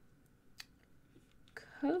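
Faint, scattered taps and clicks of a stylus writing on a tablet screen, followed near the end by a woman's voice starting to speak.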